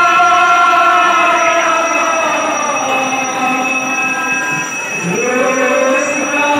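Odia kirtan group singing long, drawn-out notes together in chorus. The pitch slides slowly, dipping and rising again about five seconds in.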